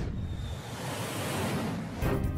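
Jet aircraft passing by: a rushing engine noise that swells about a second in and then eases, with a faint falling whine early on.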